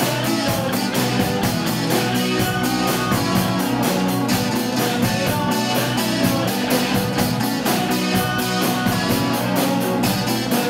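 Live rock band playing, with electric guitars over a steady drum and cymbal beat.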